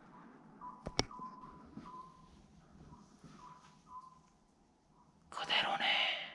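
Near-quiet room with a single sharp click about a second in and a faint, broken high tone; near the end a man whispers briefly.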